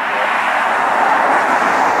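A car passing on the road: a steady rushing of tyre and road noise that grows slowly louder.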